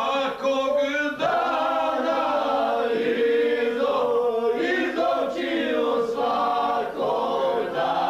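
Male voices singing together without accompaniment, with long held notes.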